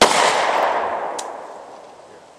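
A single 9mm pistol shot, its report echoing and dying away over about a second and a half.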